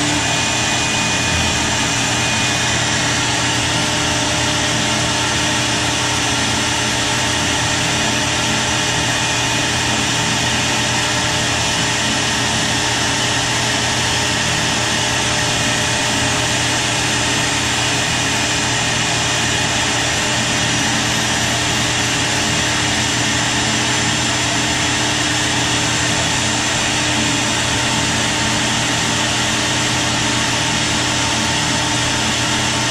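A CNC router's spindle running at a steady speed with a steady whine, joined by a steady rushing noise, while a tiny 1/16-inch bit makes a very shallow engraving pass in wood.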